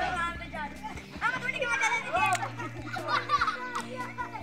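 Children shouting and calling out during a game of football, over music.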